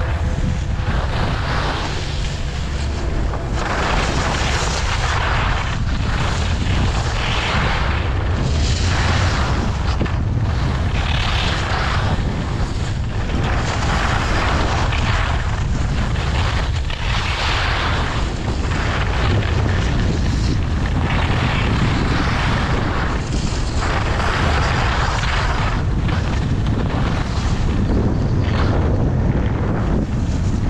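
Wind rumbling on a helmet-mounted camera's microphone while skiing downhill, with the skis scraping over groomed snow in surges every second or two as they carve turns.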